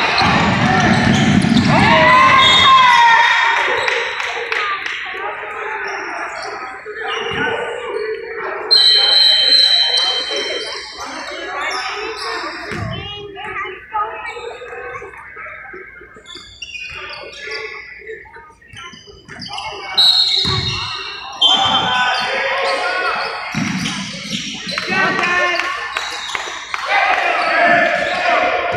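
Basketball game sounds: the ball thudding on the hardwood court with a few sharp knocks, short high squeals, and players and spectators calling out, all echoing in a large gym.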